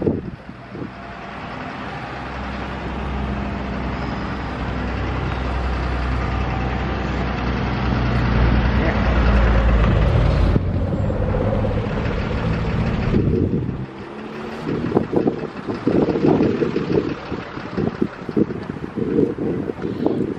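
Road traffic: a heavy vehicle's engine rumble swells over several seconds and then drops away, followed by gusty wind buffeting the microphone.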